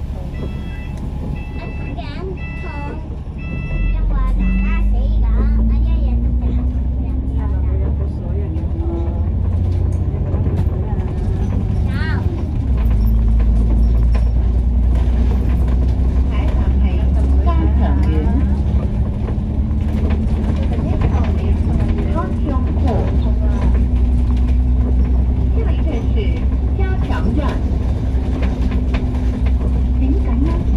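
Alexander Dennis Enviro500 MMC double-decker bus heard from inside, its engine and transmission pulling under load: a low drone with a whine that rises in pitch as the bus gathers speed, drops back about twelve seconds in at a gear change, then climbs slowly again.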